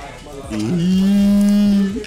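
A long, low moo starting about half a second in. It dips slightly at first, then holds steady on one pitch for over a second before stopping.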